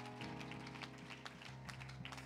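Soft sustained keyboard chords played under scattered, light hand claps from a few people.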